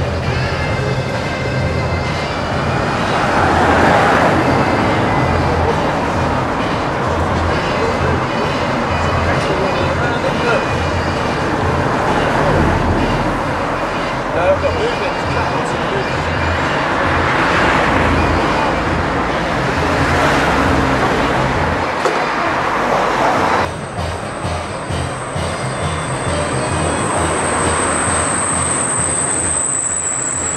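People talking over motor scooter engines running. About three-quarters of the way through, the sound changes abruptly and a thin, steady high-pitched tone begins.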